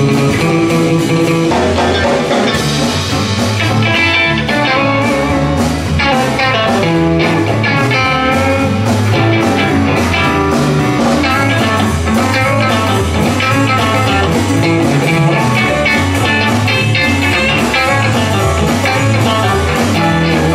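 Live blues band playing an instrumental passage, with electric guitar out front over bass guitar, drum kit and keyboard, at a steady loud level.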